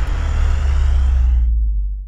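Outro logo-reveal sound effect: a deep cinematic boom with a swishing hiss on top. The hiss fades away over about a second and a half, while the low rumble holds steady and then cuts off suddenly at the very end.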